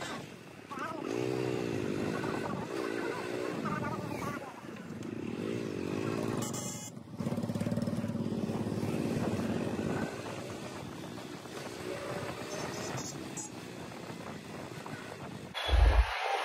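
Small single-cylinder motorcycle engine, a Hero Splendor Plus, running steadily for a few seconds in the middle, with people's voices around it earlier.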